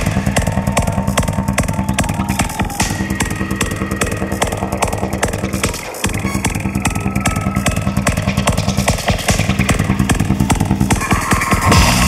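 Psytrance with a fast, rolling bass line. The bass drops out for a moment about halfway through, then comes back.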